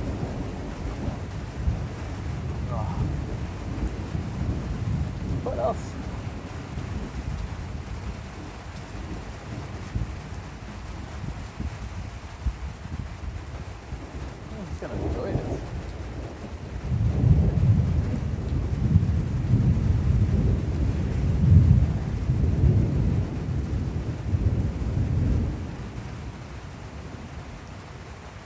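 Thunder rumbling over steady rain, building into a long, louder roll about two thirds of the way through, then dying away near the end.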